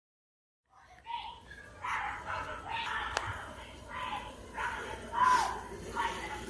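Neighbours shouting in a heated argument, in irregular loud bursts of raised voices starting about a second in.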